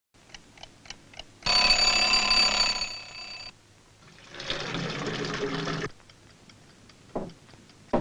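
Mechanical alarm clock: a few faint ticks, then the bell rings loudly for about two seconds and stops abruptly. About a second later a second, lower and noisier sound follows for a second and a half.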